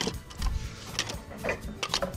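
A handful of short, sharp clacks, about one every half second: plastic squeegee handles knocking against each other as one is taken from a bin, and a handle being pushed onto a wooden cone adapter.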